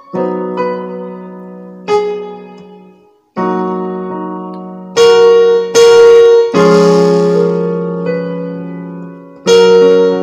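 Piano voice of a Yamaha digital keyboard playing block chords in F-sharp major, each chord struck and left to ring and fade. There is a short break about three seconds in, and the loudest chords come near the middle.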